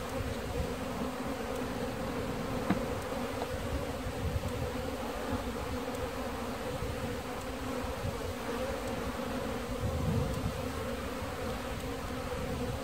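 Honeybees buzzing in a steady hum as they fly around an opened hive, with one faint click a few seconds in.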